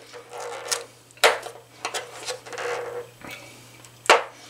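Flat-head screwdriver scraping and prying at the plastic cover over a water heater's anode-rod port, with scratching and several sharp clicks as the cover works loose; the loudest click comes a little over a second in.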